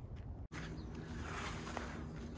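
Faint footsteps on soil with a low steady hum underneath; the sound cuts out completely for an instant about half a second in.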